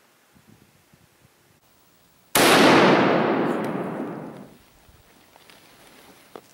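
A single rifle shot about two seconds in, very loud and sudden, its report echoing through the woods and fading out over about two seconds.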